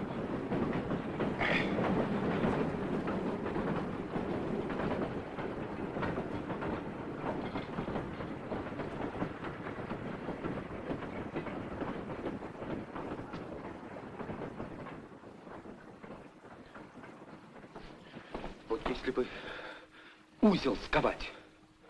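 A heavy freight train passing, its rumble and wheel clatter on the rails loud at first, then fading away over the last several seconds.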